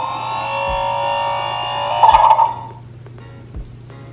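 Paw Patrol Rocky's Lights & Sounds toy garbage truck playing its short electronic try-me tune through its small speaker. The tune stops abruptly about two and a half seconds in.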